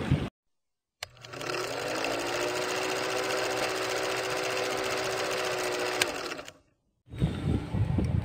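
Film projector sound effect accompanying a countdown leader: a motor winding up in pitch, then a steady mechanical whirring clatter for about five seconds that cuts off abruptly.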